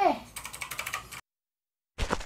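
Fast typing on a Tesoro RGB mechanical keyboard with optical switches: a quick run of key clicks that cuts off abruptly just over a second in.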